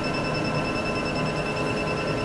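Diode laser hair removal machine sounding its steady, high-pitched emission beep while its foot pedal is held down to fire the laser, over a low steady hum.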